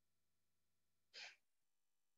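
Near silence, with one short intake of breath by a woman narrating, about a second in.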